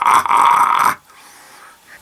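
A man's hoarse, drawn-out laugh for about a second, cut off abruptly, then quiet room tone.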